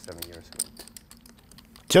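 Poker chips clicking together as they are handled and stacked at the table: a run of light, quick clicks.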